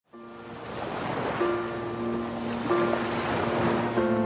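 Ocean waves washing, fading in from silence. Soft, sustained music notes come in about a second and a half in, and again near three seconds.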